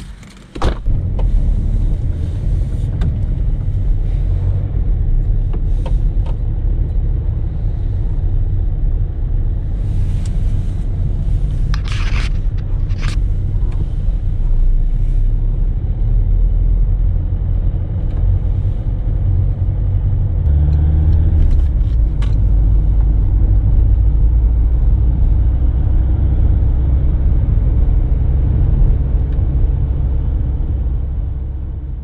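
Citroën car's engine starting about half a second in, just after a sharp click, and then running steadily with a strong low rumble, heard from inside the cabin. A few sharp clicks come about twelve seconds in, and the engine note steps up and grows a little louder about twenty seconds in.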